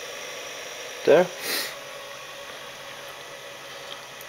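Steady hum of a 12-to-230-volt inverter running under load, powering a lamp from a 12-volt battery, with a brief hiss about a second and a half in.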